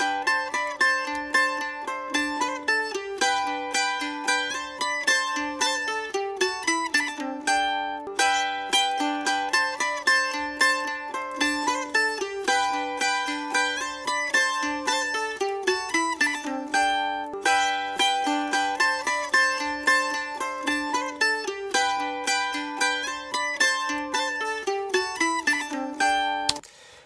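Mandolins playing a rapidly picked melodic phrase, played back from a mix session. The phrase repeats three times, about every eight to nine seconds, each ending in a falling run of notes.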